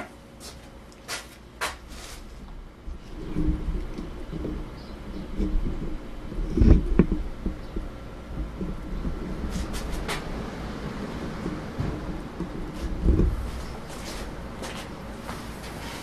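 Handling noise: a few soft clicks, then low rumbling and knocking as things are moved about, with a louder thump about seven seconds in and another about thirteen seconds in.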